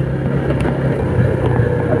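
Old Yamaha Vega underbone motorcycle's small four-stroke single-cylinder engine running steadily under way, with wind buffeting the microphone.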